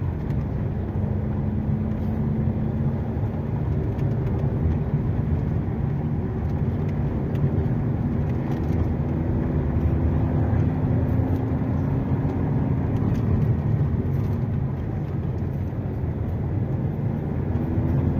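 Car engine and road noise heard from inside the cabin as the car climbs a steep paved hill. There is a steady low rumble, and the engine note rises slightly midway, then fades out a few seconds before the end.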